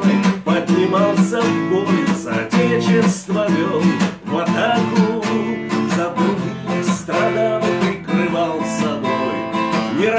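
Steel-string acoustic guitar strummed in a steady rhythm, accompanying a man singing a folk-style song.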